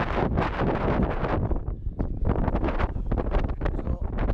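Gusty wind buffeting the camera's microphone: a loud, uneven rumble that swells and drops with each gust, easing briefly about halfway through.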